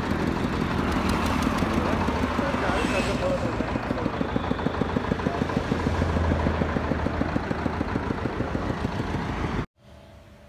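A small engine running steadily with a fast, even chugging pulse. The sound cuts off suddenly near the end.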